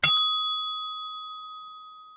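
A single ding from a small bell, struck once and ringing out with a clear high tone that fades away over about two seconds, laid over a title card as an editing sound effect.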